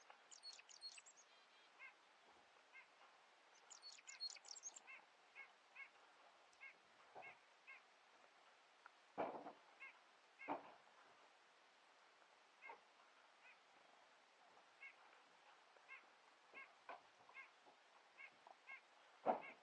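Faint bird calls: a long series of short, repeated calls, with two bursts of high, rapid twittering near the start and about four seconds in. A few louder, lower sounds stand out around nine and ten seconds in.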